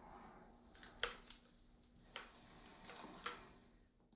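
Faint clicks and light knocks of a single-action revolver being spun and caught in the hand, about five of them at uneven spacing, the sharpest about a second in.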